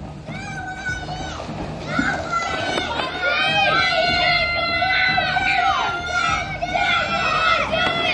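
Children shouting and cheering over one another, growing louder about two seconds in, with music underneath.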